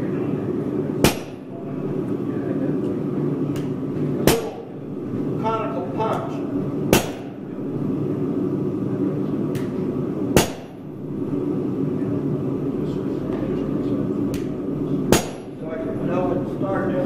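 Blacksmith's hammer striking steel on an anvil five times, a few seconds apart, each blow sharp with a brief metallic ring. A steady low roar runs underneath.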